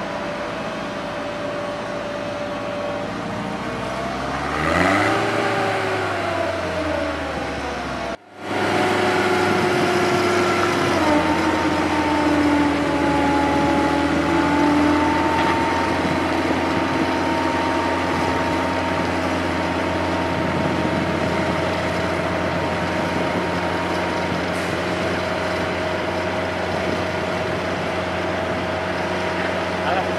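The boom lift's Nissan A15 four-cylinder gas engine running, its revs rising and falling about four to seven seconds in. It drops out for a moment just past eight seconds, then runs louder and steady with a held whine.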